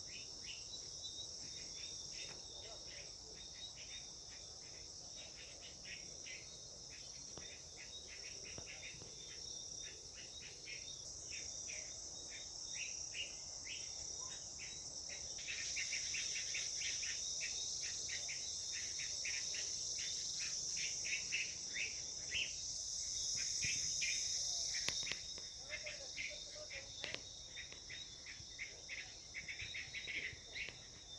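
Insects calling: a steady high buzz over a rapid run of chirps. It grows louder about halfway through and eases off near the end.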